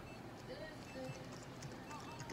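Faint, quiet speech in a small room, with a few short murmured syllables and no clear other sound.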